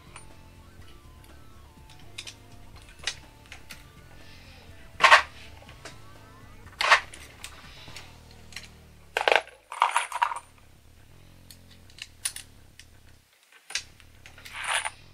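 Hornady reloading press being cycled by hand to resize empty brass cartridge cases: irregular sharp metallic clicks and clinks from the press and the brass, the loudest about five seconds in and a quick cluster around nine to ten seconds.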